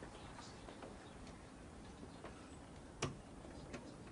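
Quiet room with faint, irregular ticks and clicks, and one sharper click about three seconds in.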